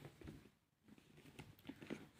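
Faint clicks and light rustling of a cardboard smartphone box being handled, with a few small taps in the second second.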